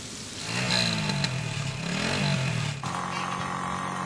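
Small motorcycle engine of a tricycle revving, its pitch rising and falling twice, then running steadily from near the end.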